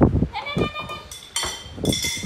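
Stainless steel lid knocked against a metal basin, clanking twice and ringing on with a steady high tone after each knock.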